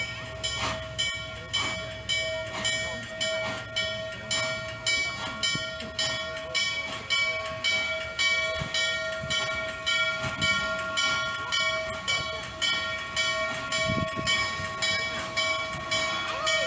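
Bell of Norfolk & Western steam locomotive 611 ringing steadily, about two strokes a second, as the engine moves slowly along the track, with a low rumble under it.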